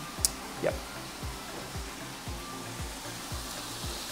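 Ground beef frying in a pan with a steady sizzling hiss, under background music with a regular low beat.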